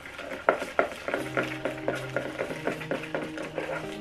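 Folded paper slips being shaken in a lidded leather cup: a quick run of light rattling clicks, several a second.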